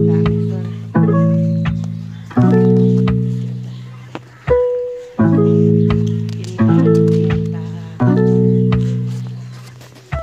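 Background music: a low chord struck about every one and a half seconds, each ringing out and fading before the next.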